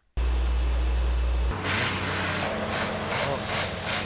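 Water-well drilling rig running: a steady, loud machine noise with a heavy low rumble for the first second and a half, then a lighter rumble, with a voice faintly under it.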